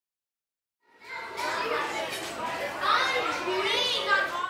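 Children's voices at play, chattering and calling out, starting about a second in, with a high rising squeal near the end.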